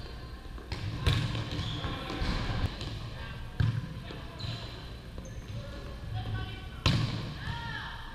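A volleyball being hit during practice: three sharp smacks, about one, three and a half and seven seconds in, ringing in a large gym over the background chatter of players.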